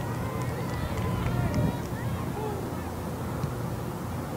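Faraway shouts and calls from players and coaches on an outdoor soccer field, too faint to make out as words, over a steady low rumble.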